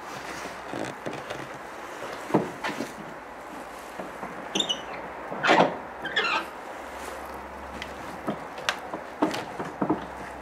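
A hand trying the knobs of an old wooden double door: a string of short clicks and thumps, the loudest about halfway through, with a few brief squeaks among them.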